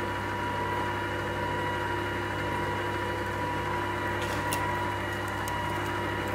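Electric stand mixer running steadily, its whisk beating cake batter in a stainless steel bowl: a constant motor hum.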